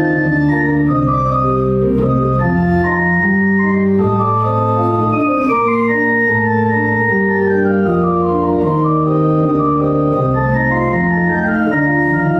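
Pipe organ playing held chords, with pedal bass notes changing beneath the manuals. A high melody line falls gradually through the middle and climbs again toward the end.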